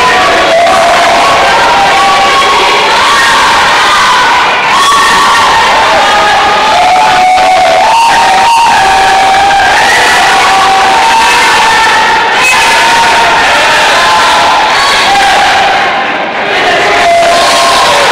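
A school gym crowd shouting and cheering loudly and without a break, many voices overlapping in the hall's echo, urging on a wrestler who has his opponent down on the mat.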